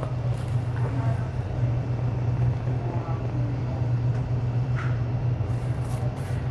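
A steady low hum, with faint voices now and then.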